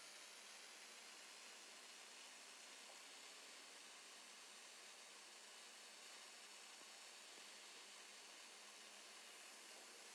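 Near silence: a faint, steady hiss.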